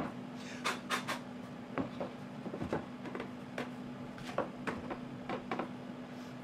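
Scattered light knocks and clicks, about ten in six seconds, of a wooden workpiece being turned over and set down on a CNC router table to fit it over the dowel pins. A faint steady hum runs underneath.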